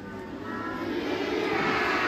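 A passing vehicle, its engine noise swelling steadily and loudest near the end.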